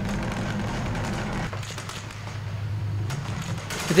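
A tank's engine running as a steady low drone, picked up by a camera mounted on the tank. About a second and a half in it drops to a quieter, lower hum.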